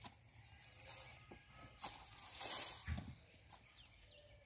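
Garden hoe scraping and dragging loose soil over a bed to cover seed sweet potatoes, with a few soft knocks of the blade. The loudest scrape comes a little past halfway.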